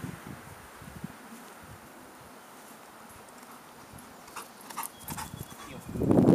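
Quiet outdoor background, then in the last couple of seconds a few faint metallic clinks and soft, uneven thuds as a dog moves in close.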